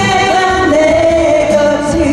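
Two women singing a Korean song together over backing music, one note held steady for about a second in the middle.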